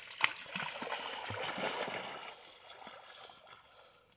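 A golden retriever splashing into a river and swimming, water splashing and sloshing. A sharp splash comes just after the start, and the splashing fades away over the last second or two.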